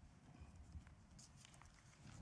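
Near silence: hall room tone with a few faint small knocks and rustles.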